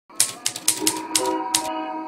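Typewriter keys striking, about six sharp clacks in the first second and a half, over the start of gentle music with held notes.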